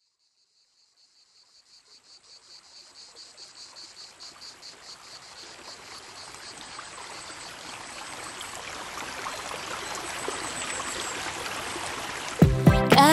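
Crickets chirping in a steady rhythm of a few pulses per second, with rushing stream water fading in beneath them and growing steadily louder.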